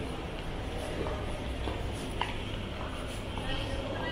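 Ambience of a large airport terminal hall: a steady low hum with scattered footsteps and clicks on the hard floor, and faint distant voices.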